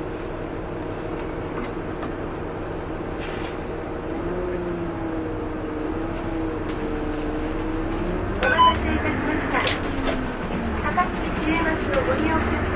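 A Takatsuki municipal bus running, heard from inside the cabin: a steady engine drone whose pitch rises and wavers from about four seconds in, then a few sharp knocks and rattles over the last few seconds.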